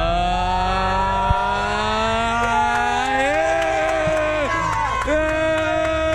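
A busload of passengers cheering with long, drawn-out shouts over the low rumble of the coach's engine, which eases near the end. The bus has just got moving again after being stuck.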